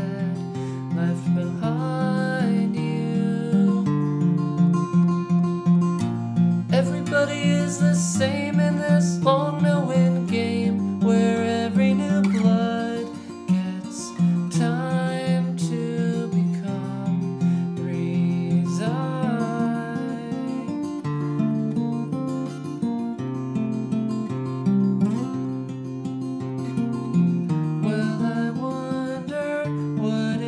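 Steel-string acoustic guitar picked in a rhythmic, continuous pattern of chords and bass notes. It is tuned down a whole step, with the high E string dropped a further whole step.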